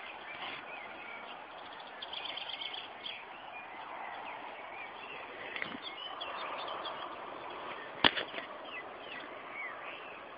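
Small birds chirping in short calls over a faint outdoor background, with a quick rattling run of notes about two seconds in. A single sharp click about eight seconds in stands out as the loudest sound.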